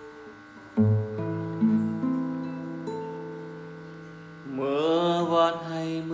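Classical guitar fingerpicked in a slow-rock accompaniment: a deep bass note, then an arpeggiated chord ringing out. A man's singing voice comes in over the guitar about four and a half seconds in.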